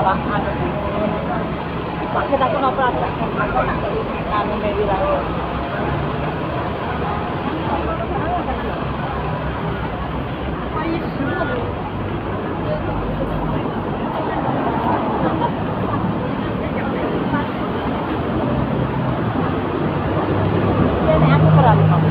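Busy city street: background chatter of passers-by mixed with the steady noise of road traffic, and a vehicle engine hum growing louder near the end.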